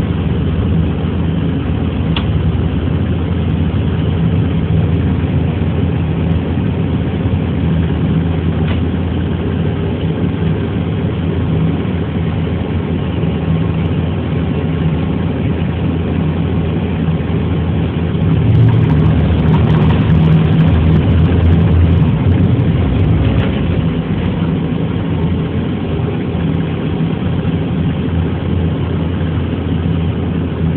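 Diesel locomotive engine running steadily with a low drone while the locomotive rolls along the track. The drone swells louder for a few seconds past the middle.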